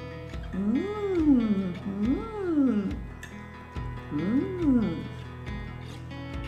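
A woman's drawn-out 'mmm' hums of enjoyment while tasting food, three of them, each rising then falling in pitch, over background music.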